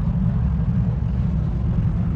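A car's V8 engine idling with a steady low rumble.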